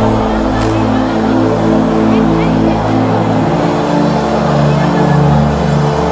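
Sustained musical chords, shifting to a new chord about three seconds in, under voices praying aloud.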